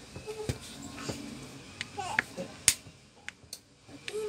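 Irregular sharp clicks and ticks of a metal pry tool against the edge of a phone's cracked screen as it is worked into the seam to lift the display, with one louder click a little under three seconds in. Brief voices sound in the background.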